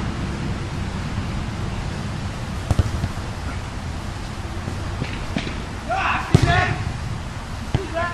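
Outdoor ball-game sounds over a steady low rumble: a few sharp knocks, the loudest a little past six seconds in, with players shouting from across the field around the same moment.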